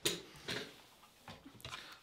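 Handling noise from picking up a white plastic charger and its cable: a sharp click at the start, another about half a second in, and a few fainter taps and knocks near the end.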